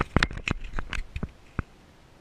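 A quick, irregular run of a dozen or so sharp clicks and knocks, stopping about a second and a half in.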